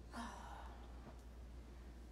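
A woman's breathy sigh-like exhale, about half a second long, just after a brief hesitant "uh", over a low steady hum.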